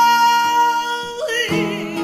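Flamenco seguiriya: a woman's voice holds one long note that ends in a short slide about a second and a half in. The flamenco guitar then plays on in plucked notes.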